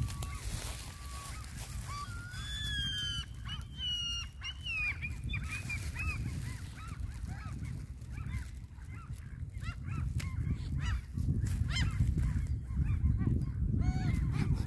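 Waterfowl calling at the water's edge: a string of short pitched calls, some gliding up or down early on and quicker, shorter notes later. A low rumble of wind on the microphone runs underneath and grows louder near the end.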